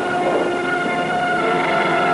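The rumble of a nuclear test explosion continues, while a sustained chord of steady tones swells in over it and grows louder.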